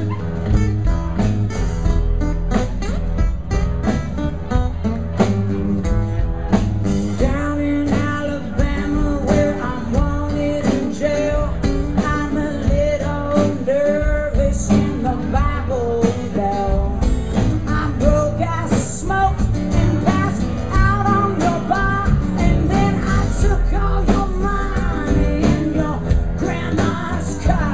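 A live blues-rock band playing: two acoustic guitars with drums and bass guitar, and a woman singing through much of it from about seven seconds in.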